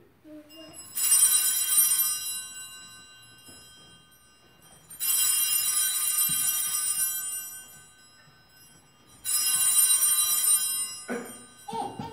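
Altar (sanctus) bells rung three times, each a shaken, jingling ring of about a second and a half, sounding at the elevation of the consecrated host after the words of institution. A cough near the end.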